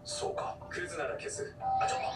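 Anime soundtrack playing at low level: a character's dialogue over background music, with a held bell-like chime tone coming in near the end.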